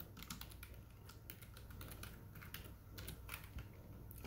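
Faint, rapid, irregular clicking of a cheap computer keyboard being typed on.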